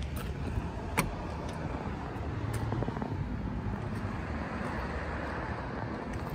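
Car door of a 1935 Ford sedan being unlatched and opened: one sharp click of the latch about a second in, then a few softer clicks as the door swings, over a steady low background rumble.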